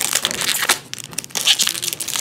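Foil wrapper of a Pokémon card booster pack crinkling and crackling as it is torn open by hand, with a brief lull a little after the first second.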